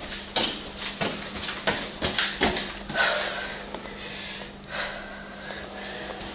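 A series of irregular light knocks and clicks with rustling in between.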